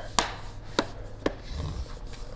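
Three light knocks and clicks of a laptop's case being handled and tipped up on its edge, the first the loudest.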